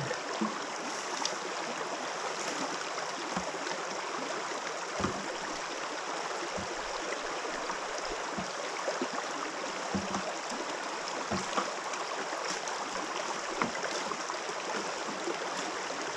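Steady rush of a shallow river flowing over stones, with a few light knocks scattered through it.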